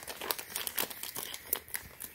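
A plastic mailer bag crinkling and crackling as small scissors snip into its corner to open it, a quick run of short irregular crackles and snips.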